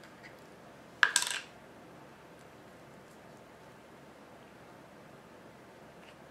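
The plastic screw cap of a Mod Podge glue jar clatters onto a laminate countertop once, about a second in, with a brief rattle.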